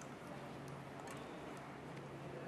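Faint room tone with a steady low hum and a few soft, scattered ticks as a metal jockey is moved along the meter bridge wire.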